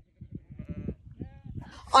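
A mob of sheep bleating faintly, two wavering calls about half a second apart in the middle, over a low rumble.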